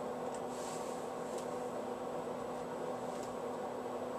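Quiet, steady hum of room tone, with a few faint soft clicks.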